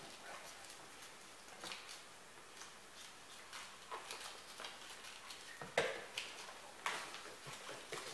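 A quiet room with a few faint, scattered rustles and soft clicks: a small folded paper slip being unfolded by hand.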